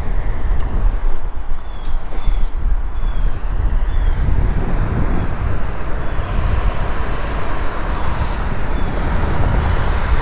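Steady rush of multi-lane highway traffic, with wind buffeting the microphone.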